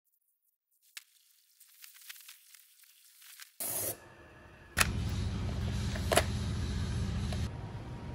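Edited snippets of a waterjet cutting through a rubber plunger: a faint crackle of water at first, then a short loud hiss from the jet just before halfway. From a little past halfway a steady low hum runs on, with two sharp clicks.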